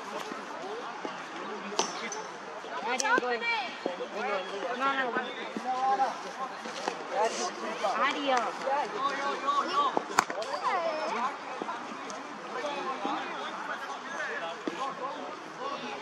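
Voices talking throughout, with a few sharp knocks of a hard cricket ball. The loudest crack comes about ten seconds in.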